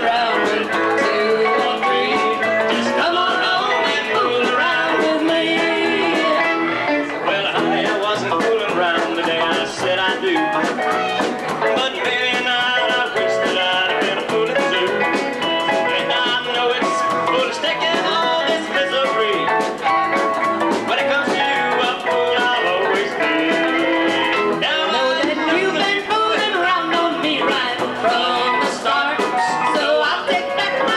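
Live band playing a song: sung vocals over electric guitar and drums with cymbals.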